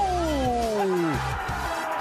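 Background music with a steady bass line, over which a man's long, falling-pitched shout slides down and dies away within about the first second.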